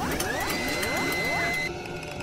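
Synthesized outro sound effects: several rising sweep tones that level off into a steady high tone, over rapid mechanical-sounding clicks. The effects cut off abruptly near the end.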